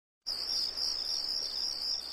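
Crickets chirping in a steady, high-pitched night-time trill that starts just after the beginning.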